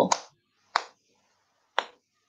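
Two short, sharp clicks about a second apart, right after a woman finishes speaking.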